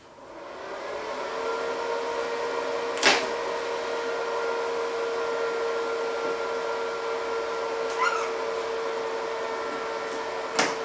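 A small inverter welding machine switched on, its cooling fan spinning up over about a second and then running as a steady hum. A sharp click about three seconds in and a smaller one near the end.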